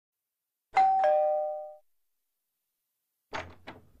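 Two-tone electric doorbell chime: a single ding-dong, a higher note followed by a lower one, ringing out in under a second. A few faint short clicks follow near the end.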